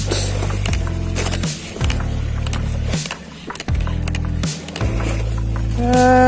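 Background music with a steady, repeating bass line and beat.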